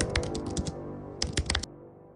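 Keyboard-typing click sound effect: a quick run of clicks, a short pause, then four more clicks, over ambient intro music that fades away.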